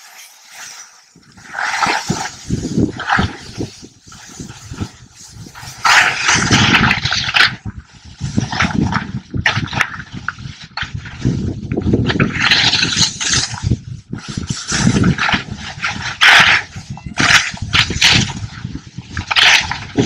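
Skis carving big GS turns on firm snow, heard from a skier following close behind: the edges scrape the snow in loud, noisy surges every second or two, over low wind rumble on the microphone.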